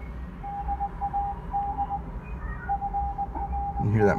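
Morse code: a single steady beep keyed on and off in dots and longer dashes, with a short pause in the middle, over a low background hum.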